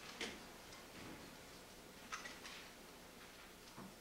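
Faint handling noise in a quiet room: a few soft clicks and light rustles, the sort made by handling papers and a pen. The sharpest click comes just after the start, two more close together about halfway, and a softer one near the end.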